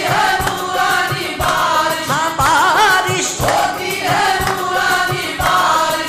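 Qawwali singing: ornamented, wavering vocal lines over a steady drum beat of about two beats a second.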